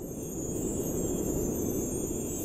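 Sound-effect swell of an animated logo outro: a low rumbling whoosh that slowly builds in loudness, with a steady high hiss above it.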